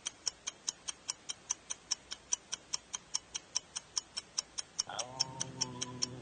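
Game countdown timer ticking rapidly and evenly, several sharp ticks a second. Near the end a voice gives a drawn-out "Oh" over it.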